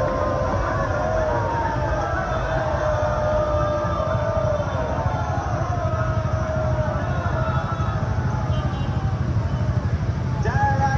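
Slow city street traffic: a steady low rumble of vehicle engines and road noise, with pitched sounds gliding up and down above it.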